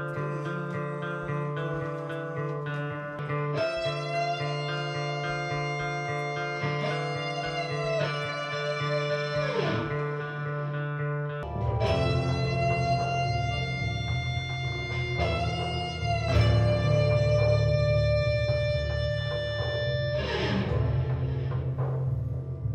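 Electric guitar playing long, high, sustained notes with bends and a sliding drop in pitch: a crying, uneasy lead line for a horror theme. It plays over a backing track with a steady low bass and repeated notes, which grows fuller about halfway through.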